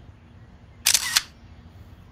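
Camera shutter sound of a smartphone taking a photo: one short double-click about a second in.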